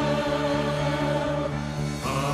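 Choir singing a long held chord.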